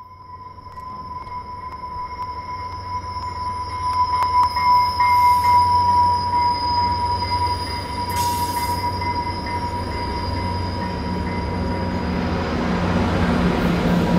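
New Mexico Rail Runner commuter train passing, its wheels giving a steady high squeal over a rumble that grows louder, with a short hiss about two-thirds of the way through.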